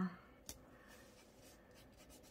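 Faint handling of paper stickers with metal tweezers: light rubbing and scratching on the planner page, with one sharp tick about half a second in.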